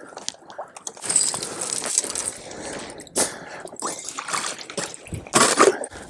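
Sloshing in icy swamp water with broken plates of thin ice knocking and scraping, and a few sharp clicks and cracks along the way.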